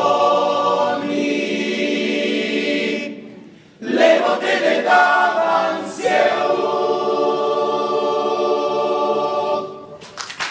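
A cappella choir singing the close of a carol. A held chord fades out about three seconds in, then after a short breath a brief phrase leads into a long final chord, held until it dies away near the end.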